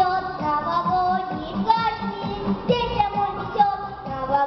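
A young girl singing a children's New Year pop song into a microphone over a backing track with a steady beat.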